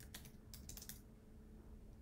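Faint typing on a computer keyboard: a short run of keystrokes within the first second.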